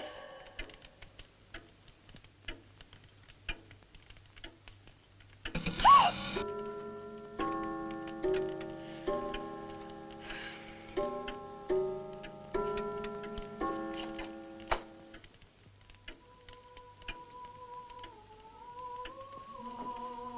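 Film soundtrack in a quiet room: a clock ticking steadily, then a sudden loud note about six seconds in. A slow, eerie melody of held notes follows, and near the end a single wavering held tone.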